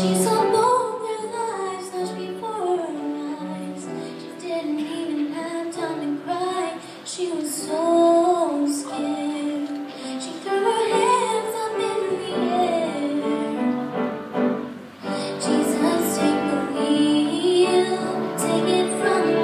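A teenage girl singing a solo with acoustic guitar accompaniment, her voice holding and gliding through long sung phrases with a short breath break about three-quarters of the way through.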